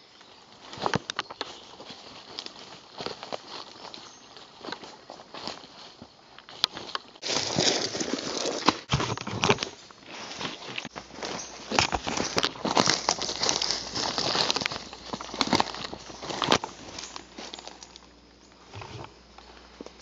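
Footsteps crunching through leaf litter and dry sticks, with irregular cracks and rustling, heavier through the middle of the stretch.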